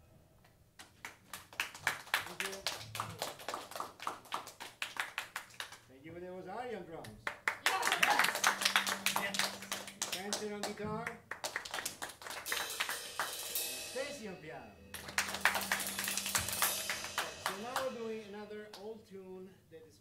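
Audience applauding in several waves as a jazz tune ends, loudest about eight seconds in, with voices in between and toward the end.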